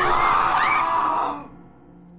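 A man and a woman crying out together in pain as their touching hands burn, over a loud hissing rush. It breaks off about a second and a half in, leaving soft steady music.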